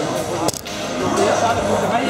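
Indistinct voices of several people talking in a large hall, with one sharp click about half a second in, after which the sound briefly drops.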